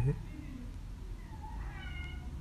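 A faint, short, high-pitched cry that arches up and down in pitch about a second and a half in, over quiet room tone.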